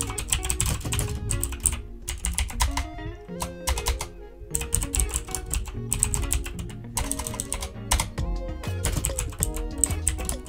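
Computer keyboard being typed on in quick runs of keystrokes with short pauses, as a text prompt is entered. Background music plays beneath the typing.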